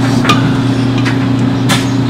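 Clothes dryer running with a steady low hum as it tumbles on low heat, with a couple of brief knocks.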